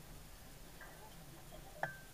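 A single sharp click with a brief high ring after it near the end, over a quiet background.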